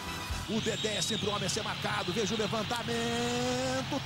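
Football TV broadcast audio at low level: a stadium crowd singing, with a Portuguese-language commentator's voice. A single long held note stands out near the end.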